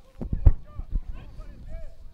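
Open-air sound on a football pitch: a few sharp thuds, the loudest about half a second in, and faint, distant shouts of players.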